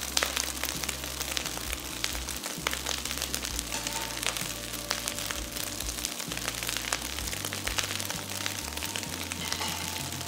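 Minced beef and freshly added diced onion sizzling and crackling steadily in a hot wok, over background music.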